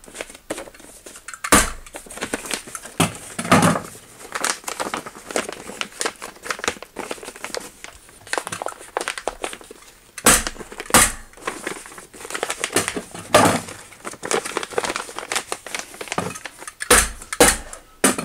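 Polyethylene vapor-barrier sheeting crinkling as it is folded and pressed flat, with sharp hammer-stapler strikes driving staples to hold it: one early on, two close together about ten seconds in, and two more near the end.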